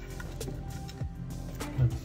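Background music with sustained held notes.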